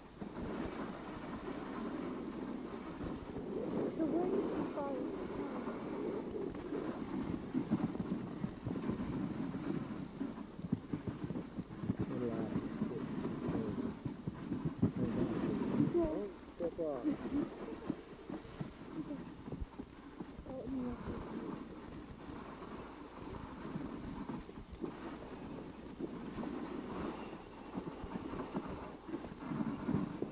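Dog sled running over snow: a steady rough scraping and rattling from the runners and sled, with brief wavering pitched sounds every few seconds.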